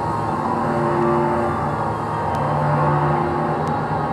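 Improvised drone music: electric bass played through effects pedals with live electronics, a dense sustained wash with long held low notes.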